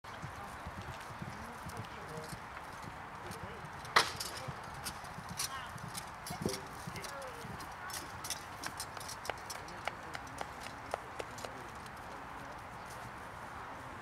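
Horses' hooves clip-clopping on turf in an irregular run of knocks, with a single sharp crack about four seconds in that is the loudest sound. The knocks die away a couple of seconds before the end.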